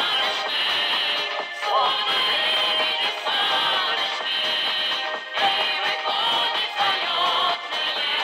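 Live Russian folk song: a woman's singing voice over accordion and balalaika accompaniment.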